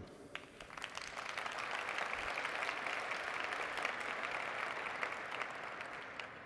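A large audience applauding. It builds up over the first second or so and tapers off near the end.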